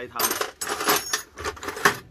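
Steel hand tools (wrenches and spanners) clinking and rattling against each other in a metal tool tray as they are rummaged through: a run of metallic clinks, the loudest near the end.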